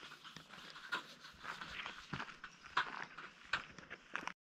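Faint handling noise: irregular rustling and small knocks, a few ticks a second.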